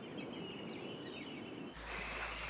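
Faint outdoor ambience with a few soft bird chirps over a steady high tone. About three-quarters of the way through it cuts abruptly to a different background with a steady low hum.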